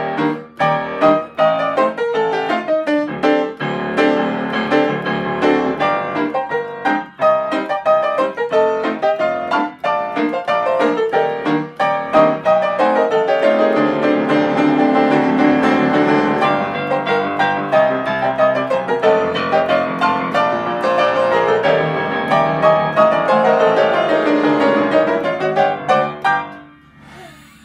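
Pleyel grand piano played solo: driving, accented repeated chords over a pounding bass line cycling through E♭maj7, A diminished 7, Dsus4 and D7. The playing breaks off at the very end, leaving a held chord ringing away.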